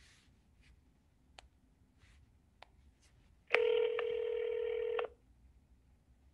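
A telephone tone: one steady electronic tone lasting about a second and a half, starting a little past halfway, with a few faint clicks before it.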